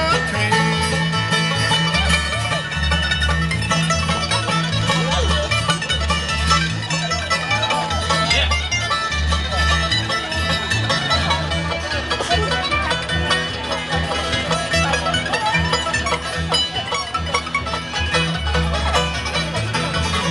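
Live bluegrass band playing an instrumental break: banjo picking over acoustic guitar strumming and an upright bass keeping a steady beat.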